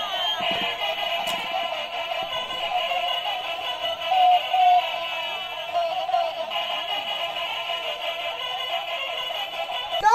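Electronic melody played by light-up musical spinning tops while they spin, continuing without a break.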